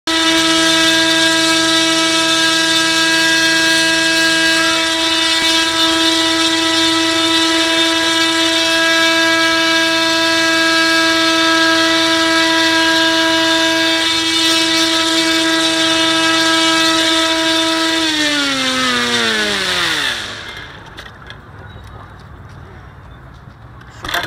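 The propulsion motors of a small air-driven bait boat running with a loud, steady high whine, then winding down in pitch over about two seconds and cutting out, after which only faint water noise remains.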